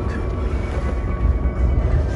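Steady low rumble of a moving car heard from inside the cabin: engine and tyre noise on the road.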